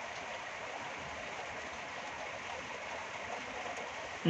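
A steady, even hiss of background noise with no clicks, tones or rhythm in it.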